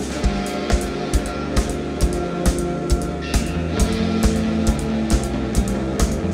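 Live pop-rock band playing an instrumental passage without vocals: electric guitars, electric bass and drum kit over a steady drum beat.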